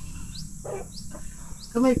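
Short high chirps, each rising in pitch, repeating about twice a second over a low background hum, with a man's voice starting near the end.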